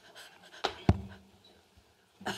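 Handheld microphone picking up handling knocks and close breathing while a baseball cap is taken off: two sharp knocks a quarter-second apart, the second louder, about two-thirds of a second and just under a second in, with breathy noise around them.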